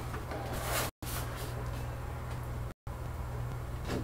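Room tone: a steady low electrical hum over hiss, cut by two brief dropouts, with a faint swell of rustling about half a second in.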